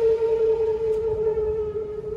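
Shakuhachi holding one long, steady note that eases off a little in the second half.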